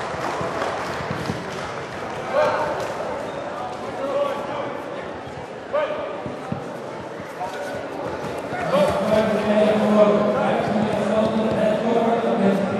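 People shouting in a large, echoing sports hall, with a few sharp thuds; about nine seconds in the voices grow louder and more sustained.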